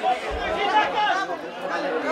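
Several voices talking and calling out over one another in a continuous chatter.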